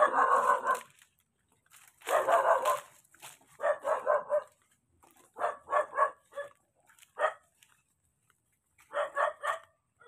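A dog barking repeatedly, in short clusters of two or three barks with pauses of about a second between them.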